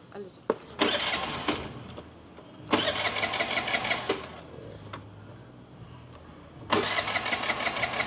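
A scooter's electric starter cranking in three separate attempts, each a rapid whirring burst of a second or more, without the engine catching: the scooter won't start.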